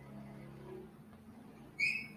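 A pause in the talk with faint low hum; near the end, a brief high-pitched whistle-like chirp.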